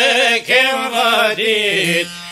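Male voice singing an Albanian folk song in a few long, wavering held phrases, accompanied by plucked long-necked lutes (sharki and çifteli).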